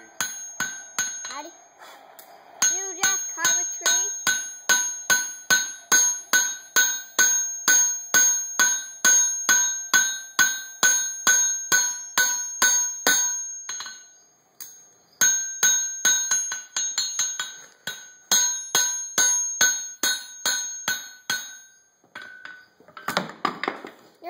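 Blacksmith's hammer striking hot coil-spring steel on an anvil, forging a knife, at about two blows a second, each blow ringing with a clear metallic tone. The hammering breaks off for about a second near the middle, then resumes and stops a few seconds before the end.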